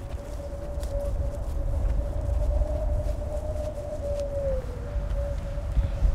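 Wind rumbling on the microphone, with a thin single tone held over it that wavers slightly and dips near the end before fading.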